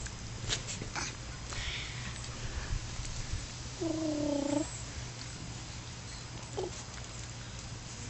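A raccoon giving one short whining call, about a second long, midway through, with a brief squeak near the end. A steady low hum and a few faint clicks lie under it.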